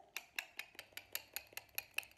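Homemade cardboard castanet snapped shut over and over in one hand, its two taped-on metal bottle caps clicking together in a steady run of sharp clicks, about five a second.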